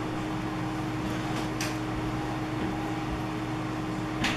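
Steady low background hum, with one faint light tap about a second and a half in as a small button is set down on the paper layout.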